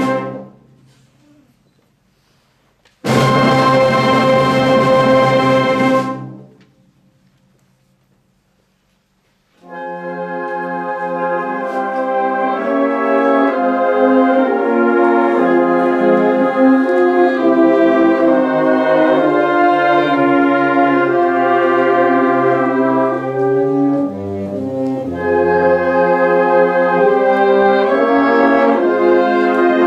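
Student concert band, brass to the fore, playing slow, solemn chords: a chord dies away at the start, a single chord is held for about three seconds after a pause, and after a second pause the band plays on without a break in full, slowly moving harmony.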